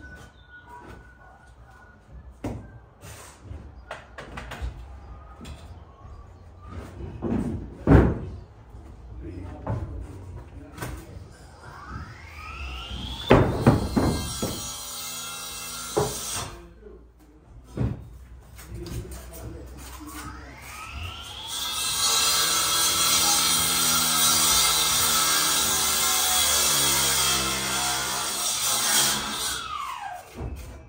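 Scattered sharp knocks from brick and trowel work. Then a power tool motor spins up twice: a short run of about two seconds, and a longer steady run of about seven seconds that winds down in pitch near the end.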